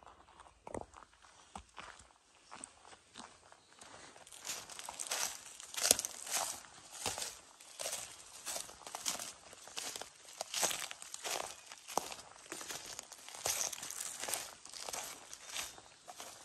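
Footsteps crunching through dry twigs and forest-floor debris, light and sparse at first, then steady at about two steps a second from about four seconds in.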